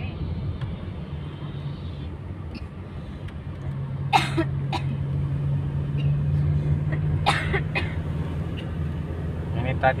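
Car engine and road noise heard from inside the cabin while driving, with a steady low hum that grows louder and firmer about three and a half seconds in. Two short, sharp noises cut through it, about four and seven seconds in.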